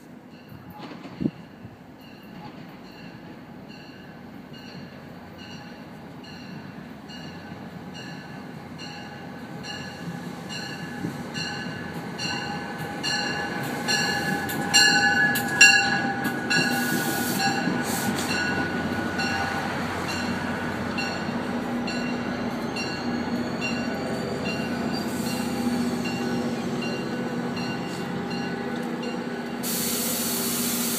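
NJ Transit commuter train with Comet coaches approaching and rolling in alongside the platform, growing steadily louder, while a bell rings with even strokes a little faster than one a second. Wheels squeal loudest about halfway through as the coaches pass and slow.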